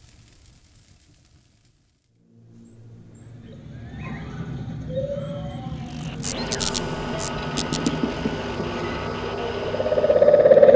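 Sci-fi film sound design: after a brief silence, a low drone swells up with gliding tones, then a run of electronic beeps and glitchy crackles from about six seconds in as a stormtrooper helmet's display boots up and flickers, building louder toward the end.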